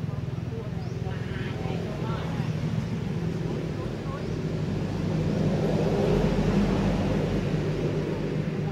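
A steady low engine hum that grows louder about five seconds in.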